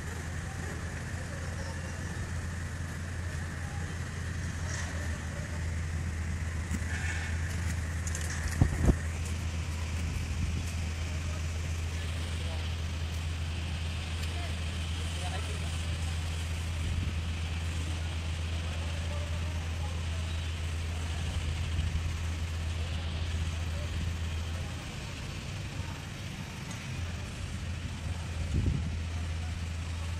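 A steady low mechanical drone, like a motor or engine running, that eases off for a few seconds near the end, with a couple of short knocks.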